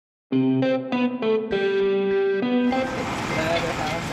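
Short instrumental intro jingle of about six notes, the second-to-last held longest, which stops a little past halfway and gives way to a steady noisy bed of ambience with indistinct voices.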